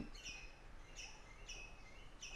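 A bird chirping faintly in the background, short high chirps repeated about twice a second.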